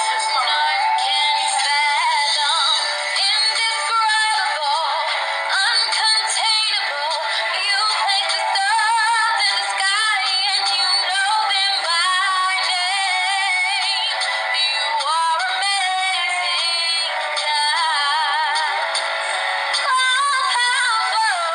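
A woman singing, her held notes wavering with vibrato; the sound is thin and tinny, with no bass.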